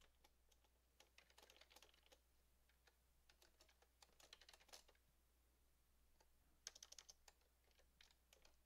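Faint typing on a computer keyboard: short runs of keystrokes with pauses between them.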